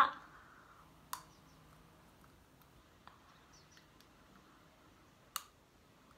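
Fingers working a small orthodontic elastic onto the hook of a clear Invisalign aligner tray in the mouth. There are two sharp clicks, one about a second in and one near the end, with a few faint ticks between.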